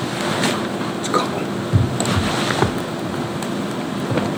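Steady room noise from the ventilation, a smooth hiss with a faint hum, broken by a few soft clicks and rustles of papers and a pen on the table.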